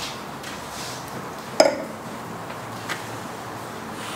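A drinking glass set down on a table with a single sharp clink that rings briefly, followed about a second later by a fainter tap.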